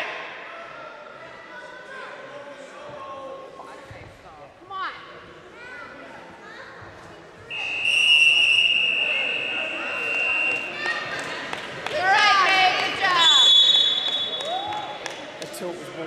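A buzzer sounds a steady high tone for about three seconds, starting about seven seconds in, and a shorter, higher tone follows a few seconds later. It is typical of a wrestling match clock signalling the end of the period or bout, heard over voices echoing in a gym.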